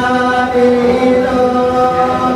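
Male voices singing a slow Santali song in long held notes, accompanied by a bowed fiddle.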